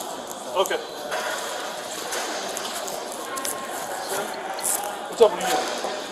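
Brief indistinct voices, one short burst about half a second in and another near the end, over a constant rustling, handling noise with small clicks.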